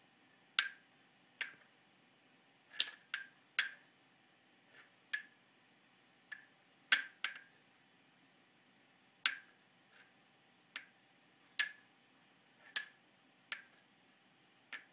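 Wooden rings of a stacking toy clicking and knocking against each other and the wooden post as a baby handles them: about fifteen short, sharp clicks at irregular intervals.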